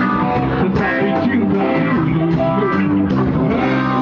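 Live rock band playing loudly, with electric guitar and bass guitar to the fore over drums.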